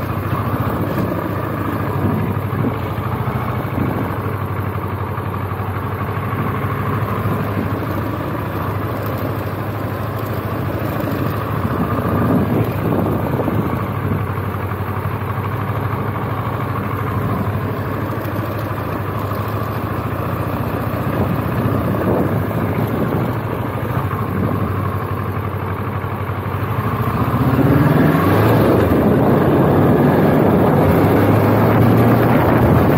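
Motorcycle engine running at low speed, its revs rising and falling during slow manoeuvres, then getting louder as it speeds up near the end.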